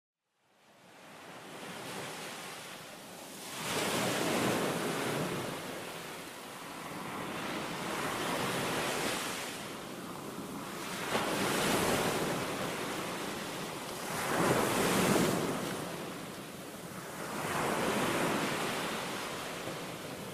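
Ocean surf washing onto a sandy beach. It fades in over the first couple of seconds, then swells and recedes with each wave, every three to four seconds.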